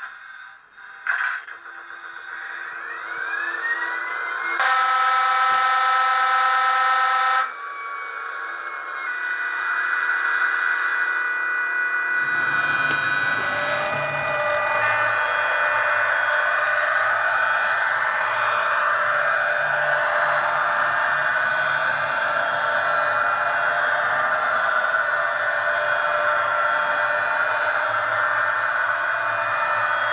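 Recorded locomotive sounds from the digital sound decoder (Jacek sound project, ZIMO MX645P22) in an MTB H0 model of a class 163 electric locomotive, played through the model's small speaker. A rising whine comes in about two seconds in, then a horn blast of about three seconds and a brief high hiss of air. From about twelve seconds in there is a steady hum and whine of the electric drive as the model runs, its pitch sliding up and down.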